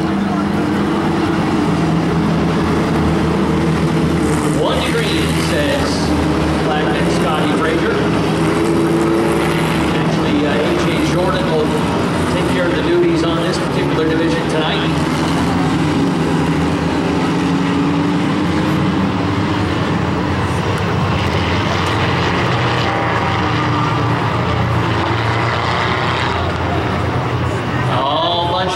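Four-cylinder pro-stock race cars circling together at caution pace before a restart. Their engines make a steady, overlapping drone, with pitches sliding up and down as cars pass.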